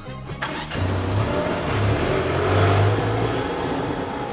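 A car driving off, its engine and tyres swelling to a peak about midway and then easing, over background music.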